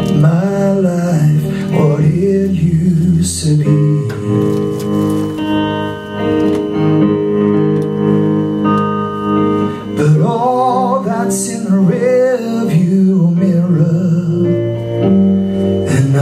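Live country song: a man singing to his own electric guitar. His voice carries melodic lines near the start and again from about ten seconds in, with held guitar chords ringing between.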